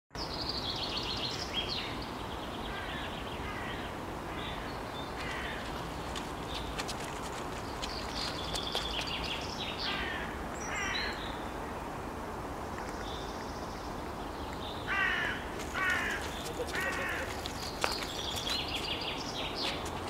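Outdoor park ambience: birds calling repeatedly in short bursts of notes over a steady background noise.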